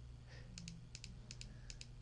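Faint, irregular clicks of computer keys, about ten taps in two seconds, over a low steady hum.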